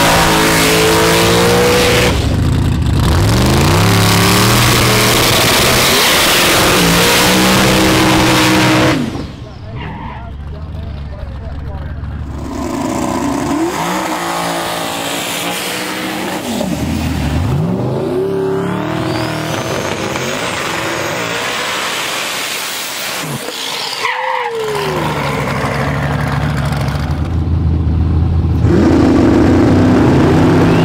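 Drag car engine revving hard, its pitch rising and falling in blips, then dropping away suddenly about nine seconds in. A rear-tire burnout follows, the engine held high with rising and falling revs, and loud engines idle again near the end.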